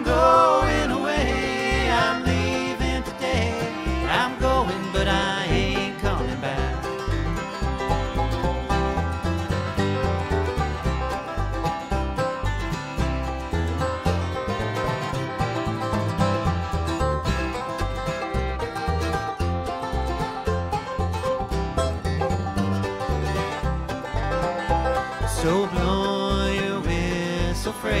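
Acoustic bluegrass band playing an instrumental break between verses: a five-string banjo leads over a steady rhythm of acoustic guitar, mandolin and upright bass, with fiddle.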